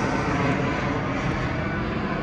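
Passenger jet flying low overhead, a steady, even rushing engine noise.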